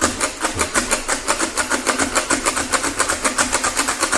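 Comptometer mechanical calculator keys pressed down over and over in quick succession, a fast even run of mechanical clacks at about six a second. The same number is being entered again and again to multiply by repeated addition.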